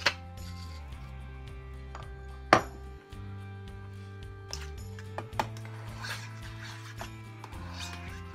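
Metal utensil clinking and scraping against a stainless steel mixing bowl as egg-yolk filling is stirred, with one loud sharp clink about two and a half seconds in and smaller ones later. Background music with steady low tones plays underneath.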